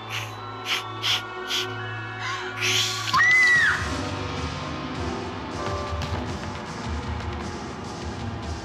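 Horror score holding a steady drone with a few sharp stabs, then a woman's short, loud scream about three seconds in, followed by a run of thuds as she tumbles down a wooden staircase.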